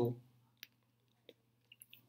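A few faint, scattered clicks from a computer keyboard or mouse being used on the slides, over a faint steady low hum; the last word of speech trails off at the very start.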